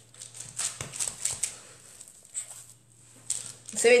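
Hands patting and pressing raw minced-meat mixture flat on oiled baking paper: a run of short, irregular soft slaps, about two or three a second. A woman starts speaking right at the end.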